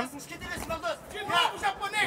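Mostly speech: a man's voice in short stretches, quieter than the surrounding commentary, over low background noise.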